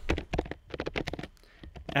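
Computer keyboard being typed on: a quick run of keystrokes, thinning out toward the end, as the word "CANCELLED" is entered.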